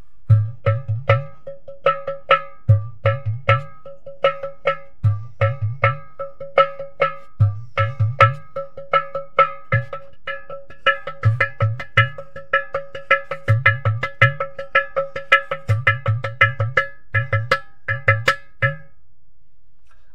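Ghatam, the South Indian clay pot drum, played by hand in a fast rhythm: sharp ringing strokes on the pot's body over repeated groups of deep bass strokes. It is played inside a small car's cabin, and the playing stops about a second before the end.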